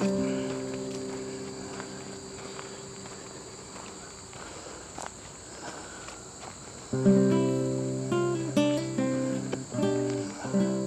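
Acoustic guitar music: a chord rings and slowly fades over the first few seconds, then plucked notes start up again about seven seconds in. Under it, the steady high trill of crickets runs on.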